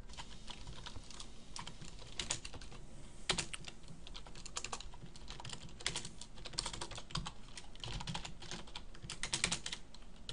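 Computer keyboard typing in irregular runs of keystrokes, with a few louder, quicker flurries.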